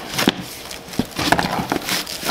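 Hands rummaging in a fabric duty bag: rustling, with a string of sharp clicks and knocks as a pair of bolt cutters is set aside.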